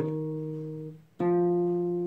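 Single notes plucked on a cutaway nylon-string classical guitar. An E-flat rings and dies away before the one-second mark, then an F is plucked about a second in and rings on.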